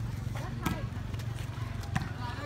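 A volleyball being hit twice, two sharp knocks a little under a second in and again near the end, over faint voices of players and onlookers and a steady low background rumble.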